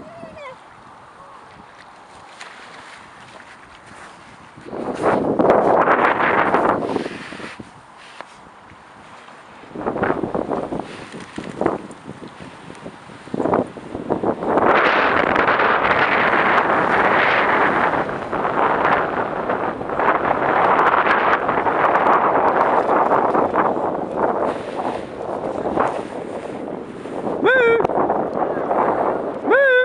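Springer spaniel splashing through shallow river water, with wind buffeting the microphone. There are short bursts about five and ten seconds in, then continuous splashing from about fifteen seconds on.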